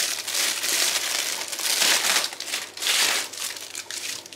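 Clear plastic packaging bag crinkling and rustling as it is pulled off an artificial flower bouquet and handled, an irregular crackle that comes and goes.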